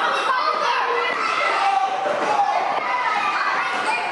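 Children's voices overlapping as a group of young children shout and play in a large indoor gym.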